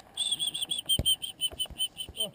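An animal's high chirping call, a rapid even series of short clear notes at about five a second. A single thump sounds about a second in.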